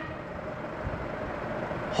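Steady background noise, an even hiss with a low rumble, between spoken sentences.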